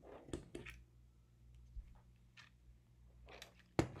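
Faint clicks and rustles of hands fitting alligator-clip leads onto a micro:bit board, over a low steady hum, with a sharper click near the end.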